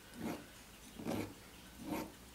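Hand file rasping across a small brass repair section of a clock wheel in three short strokes, about one every second.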